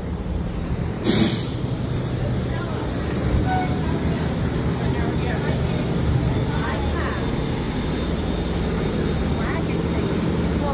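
Diesel engine of a large vehicle idling steadily, with a short, loud hiss of air about a second in, as from an air brake. Faint voices in the background.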